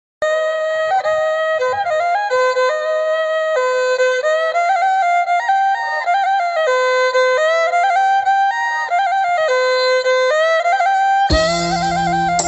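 Instrumental Khmer traditional tune: a single melody line with quick ornamental turns, played alone. Just past eleven seconds a low sustained drone and percussion come in beneath it.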